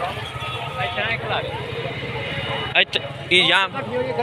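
Men's voices calling out over a steady low rumble, like engines running nearby. The rumble cuts off about three-quarters of the way through, followed by a loud, high call.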